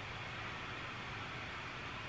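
Steady low hiss of background room tone, with no distinct events and no music.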